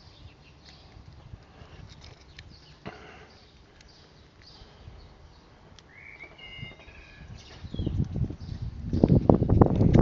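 Faint clicks and scratches of fingers picking hardened glue off a small circuit board, with a bird chirping briefly about six seconds in. Over the last two seconds a loud, ragged rumble on the microphone.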